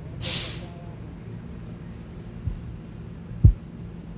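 A steady low motor hum, with a short burst of hiss near the start and two dull low thumps about a second apart near the end, the second one the loudest.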